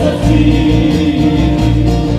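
Live male vocal group singing sustained notes in harmony over strummed acoustic guitars and a low bass line, amplified through a PA.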